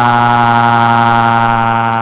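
A computer text-to-speech voice holding one long "oh" at a single flat pitch.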